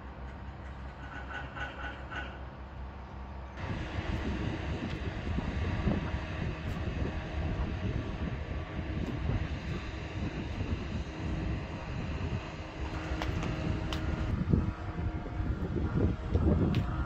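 Outdoor ambience with a steady low hum. About three and a half seconds in it gives way abruptly to a louder, uneven low rumble of wind on the microphone, with a few sharp clicks near the end.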